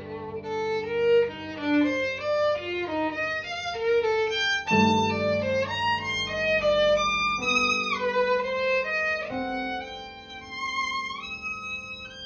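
Violin playing a slow, lyrical classical melody with vibrato over upright piano accompaniment, sliding between notes near the middle and again near the end. A low piano chord is struck a little before the halfway point and held beneath the violin.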